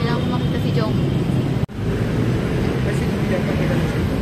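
Steady low rumble of outdoor background noise, with a momentary break in the sound about one and a half seconds in.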